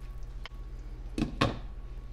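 A GreenLife glass pot lid being set onto a cooking pot: a light clink, then a louder knock a quarter-second later as it settles.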